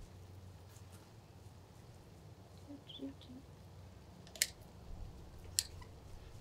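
Poultry shears cutting through a raw chicken's ribs and skin along the backbone: faint crunching snips, with two sharp clicks of the blades near the end.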